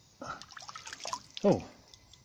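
Shallow stream water splashing and dripping in short irregular bursts, with a few sharp clicks, as a hand reaches into the streambed and lifts out an old glass bottle.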